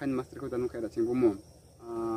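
A man talking in short phrases, with a brief pause near the end.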